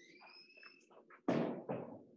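Two short knocks or thumps in quick succession about a second and a half in, preceded by a faint high squeak.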